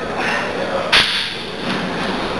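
Heavily plate-loaded barbell during a bench press rep: one sharp metallic clack about a second in, the iron plates knocking on the bar as it is pressed up.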